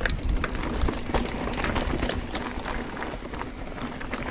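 Giant Trance 3 full-suspension mountain bike rolling fast down rocky dirt singletrack: knobby tyres crunching over dirt and rocks, with a dense, uneven run of clicks and rattles as the bike bounces over the rough ground.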